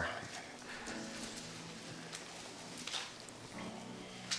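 Quiet room with a few soft paper rustles and handling sounds as Bible pages are turned.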